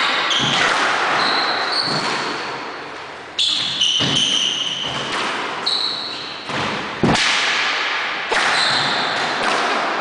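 A squash rally: the ball cracks off rackets and the court walls about six times, roughly a second apart, each hit echoing in the enclosed court. Short high squeaks of shoes on the wooden floor come between the hits.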